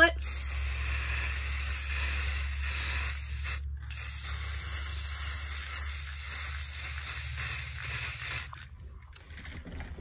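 Aerosol can of Rust-Oleum 2X matte clear spray hissing as a sealing coat goes on, in two long bursts with a short break about three and a half seconds in, and stopping shortly before the end.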